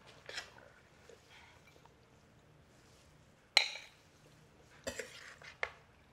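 A metal serving spoon scraping and clinking against a stainless skillet and a ceramic bowl as food is served. There is a soft scrape near the start, one sharp ringing clink a little past halfway, and a few lighter knocks near the end.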